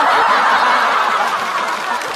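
Studio audience laughing at a punchline, loudest at the start and slowly fading.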